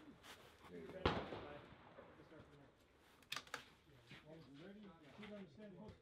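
A single .22LR rimfire rifle shot about a second in, its report dying away briefly. Two sharp clicks follow a couple of seconds later, then low voices talk near the end.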